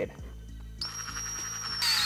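Cordless drill with an eighth-inch bit boring through a plastic motorcycle front fender: a steady high-pitched motor whine starts about a second in, then a louder run begins near the end.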